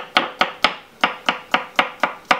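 Kitchen knife chopping a courgette core into chunks on a wooden chopping board: a quick run of sharp knocks, about four a second, with a short break about a second in.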